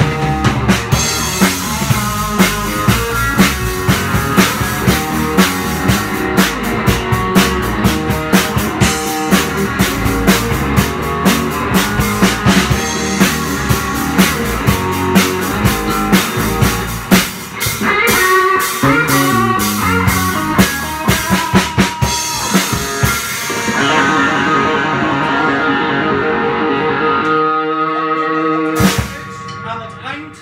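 A band playing a rock number: a Stratocaster-style electric guitar with bent notes over a full drum kit. About three-quarters of the way through the drums drop out and the guitar rings on alone, and the song ends with a final hit near the end.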